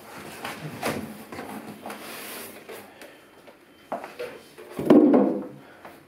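Cardboard shipping box being opened by hand: flaps rubbing and scraping against each other, with a louder dull thump about five seconds in.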